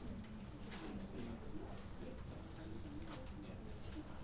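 Faint, low voices murmuring or humming without clear words, over a steady room hum.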